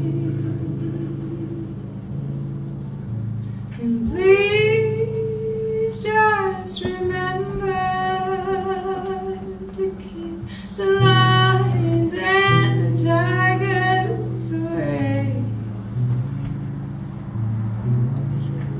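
A woman singing live with her own acoustic guitar accompaniment: ringing guitar chords alone for the first few seconds, then sung phrases with held, wavering notes over the chords.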